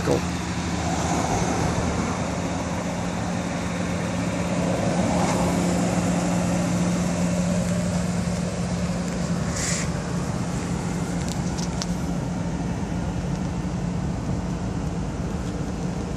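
Steady motor-vehicle noise: a constant low hum under a wash of traffic-like rumble that swells and fades a couple of times, with a brief rattle about ten seconds in.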